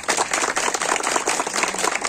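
Audience applauding: many people clapping in a dense, steady patter.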